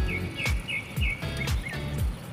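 Background music with a steady beat, about two beats a second over a bass line, with a quick run of high chirping notes in its first second.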